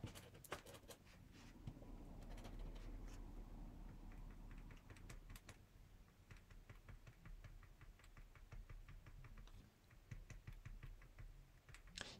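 Faint, irregular light taps of a paint pen's tip dabbing small dots onto card stock.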